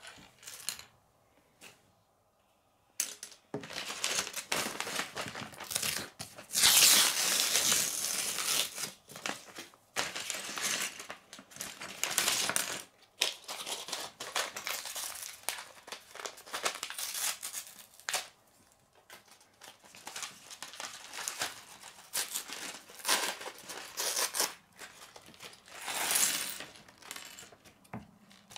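A paper LEGO parts bag being crinkled and torn open, with small plastic bricks clattering onto a wooden table. The rustling and crackling start about three seconds in and come in bursts, loudest for a second or two early on.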